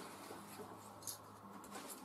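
Faint rustling of small packaging, with a few light clicks, as needle threaders are pulled off their packet.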